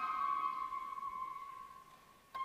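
Flute holding one long high note that slowly fades away near the end.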